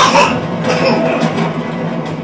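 Tense drama-series score played from a television: a steady low drone with a sudden hit right at the start that falls away, and another short burst under a second in.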